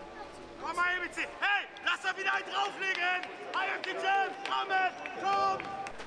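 A man shouting on a football pitch: a run of short, raised calls with brief pauses between them, urging his teammates on.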